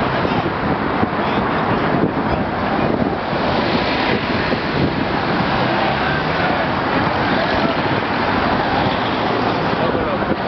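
Dense, steady noise of a large crowd of marchers, many voices at once with no single voice standing out.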